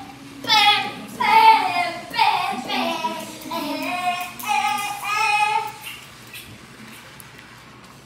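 A girl's high voice singing a short tune of held, wavering notes for about five seconds.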